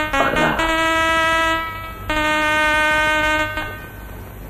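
Film background score: a falling run of notes ends in a downward swoop, then two long held notes, the second a little lower than the first.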